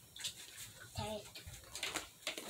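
A child's short, faint voice from out of view about a second in, amid a few light knocks and rustles.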